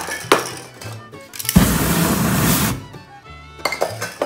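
One burst of aerosol spray paint hissing for about a second, beginning about a second and a half in, with a few sharp clicks before and after it, over background music.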